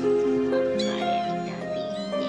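Gentle instrumental music with held notes, and over it a very young Norwegian Forest Cat kitten mewing in high, thin cries about a second in.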